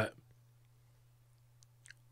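A pause in speech: near silence with a faint steady low hum, and a few small mouth clicks near the end, just before the next word.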